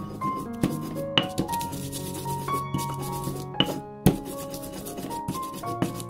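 Stone pestle grinding spices against a stone mortar (ulekan and cobek): rough scraping rubs with a few sharper knocks, about a second in and about four seconds in. Light background music with a simple melody plays throughout.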